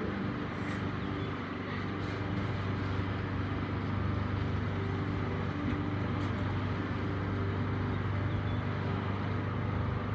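Steady low droning hum of an idling motor vehicle engine, holding one pitch throughout, over general street noise.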